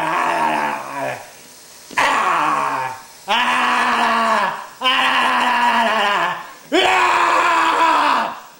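A person's voice giving a string of loud monster screams for a puppet, five drawn-out calls with short breaths between, several sliding down in pitch as they end.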